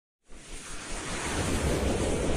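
Whoosh sound effect of an animated logo intro: a rush of noise with a low rumble beneath, starting a moment in and swelling steadily louder.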